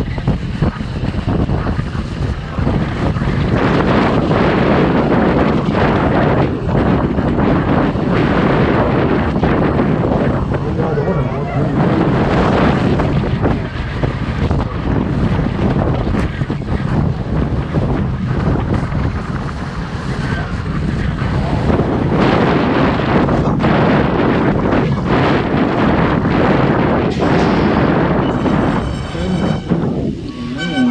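Wind rushing over a helmet-mounted camera's microphone as a BMX rider rides the track at speed, a loud, steady rushing noise.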